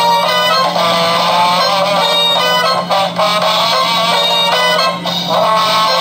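A 'Bunny Hop Radio' novelty Easter toy radio playing its single built-in song through its small speaker: a bright, busy tune with no bass, over a steady low hum.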